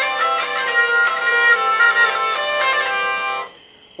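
Hurdy-gurdy played by cranking its wheel, the melody strings stepping through a few notes as the keys are pressed over a steady drone underneath; it stops about three and a half seconds in.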